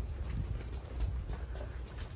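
Footsteps of people walking on a paved walkway, with a low rumble on the microphone.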